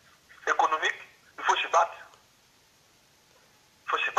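Speech only: a voice over a telephone line, thin and lacking low tones, says two short phrases in the first two seconds, then falls quiet.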